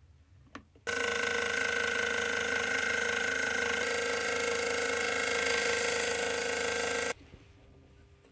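Slitting saw spinning on a mill spindle and cutting a slot into a small stainless steel pen part: a loud, steady, ringing metallic whine made of many tones. It starts abruptly about a second in and stops abruptly near the end.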